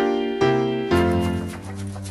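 Soft background music on a piano-like keyboard: three chords struck about half a second apart, the last one held and slowly fading.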